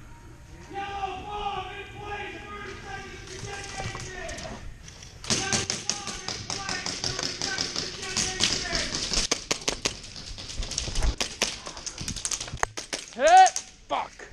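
Airsoft guns firing in an echoing indoor arena: dense runs of sharp clicks and ticks start about five seconds in, under distant shouting voices. A loud rising cry comes near the end.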